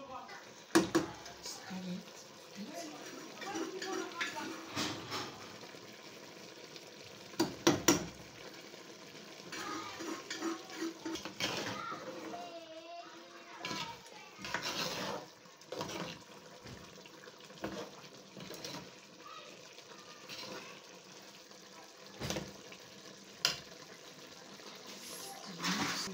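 Metal spoon scraping and knocking against a wooden mortar and an aluminium cooking pot as seasoning is scooped out and the soup is stirred, with a few sharp clanks.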